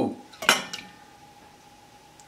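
A white dish clinks once against a stainless steel mixing bowl as four raw eggs are poured in, about half a second in, with a smaller knock just after and a brief ring dying away.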